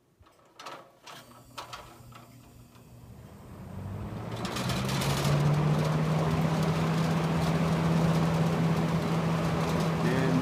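1972 Lasko Model 4700 20-inch box fan switched on at high speed: after a few clicks near the start, its motor and blades spin up, growing louder over about four seconds, then settle into a steady hum and rush of air.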